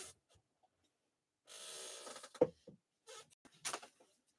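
Faint handling noise: a short scraping rustle about a second and a half in, then a few light clicks and taps.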